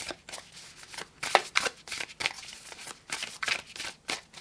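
A tarot deck being shuffled by hand: a run of quick, uneven papery rustles and flicks as the two halves of the deck are worked together.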